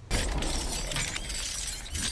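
Film soundtrack sound effects: a loud, noisy crash starts suddenly and carries on as a dense din with a deep rumble underneath.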